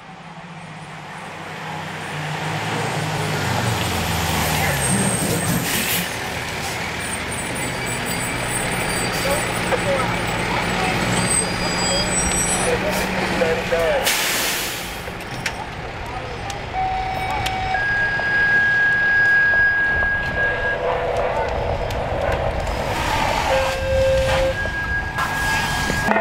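Fire engine pulling up: its engine note drops as the truck slows, followed about fourteen seconds in by a loud hiss of air brakes.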